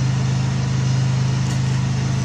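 A steady low hum, like a motor running, holding at one pitch with no change.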